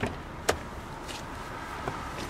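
Driver's door of a 2012 Nissan Note being opened: a small click as the outside handle is pulled, then a sharper latch click about half a second in as the door releases.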